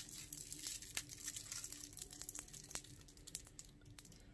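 Candy wrapper crinkling faintly as it is handled, with scattered small clicks and crackles.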